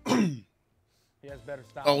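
A man's short vocal sound, a sigh-like 'hmm' that falls steeply in pitch over half a second. The sound then cuts out completely, dead silence for under a second, before speech starts.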